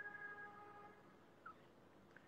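Near silence: room tone, with a faint held tone fading out within the first second.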